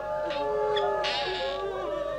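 Several mourners wailing together, overlapping cries that waver and slide up and down in pitch: a lament over a death. A short rasping cry stands out about a second in.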